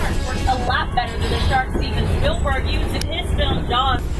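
A person talking over the low, steady rumble of a moving tour tram.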